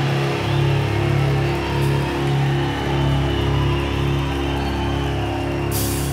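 Live symphonic metal band music: a held chord over a low note pulsing about twice a second. Near the end, sharp repeated crashing hits come in as the next song starts.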